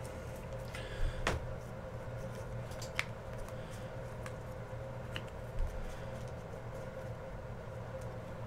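Trading cards handled and sorted through by hand: a few scattered light clicks and flicks of card edges over a steady low hum.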